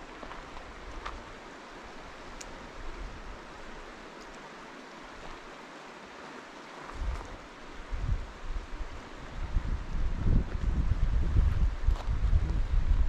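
Shallow lake water running over rocks as a steady, even wash. From about seven seconds in, gusts of wind buffet the microphone with low, uneven rumbling that grows to the loudest sound near the end.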